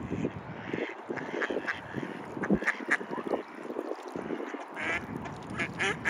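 Mallards quacking in short, separate calls, coming thicker near the end.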